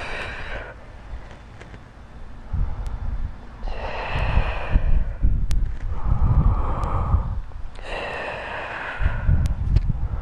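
A woman breathing deeply and audibly in time with slow seated arm strokes: four long breaths, one at the start, then about 4, 6.5 and 8.5 seconds in, over a low rumble.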